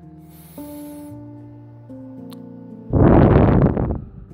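Soft background music of held tones that shift chord a few times. Near the end comes a loud, breathy rush lasting about a second: an audible breath into the microphone.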